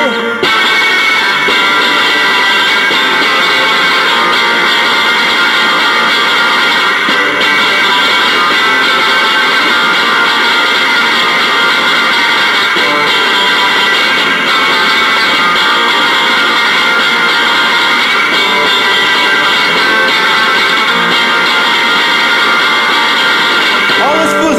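Instrumental break in a rock song: electric guitar strummed steadily as a dense, unbroken wall of sound, with no singing.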